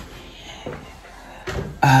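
Soft background music with a plucked guitar, playing quietly between spoken words.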